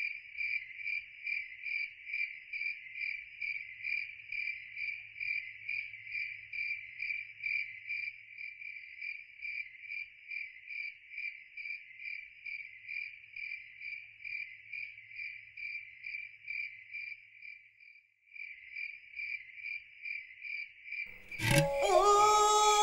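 Cricket chirping steadily at one high pitch, about two to three chirps a second, with a brief break a little after halfway. Music with singing comes in at the very end.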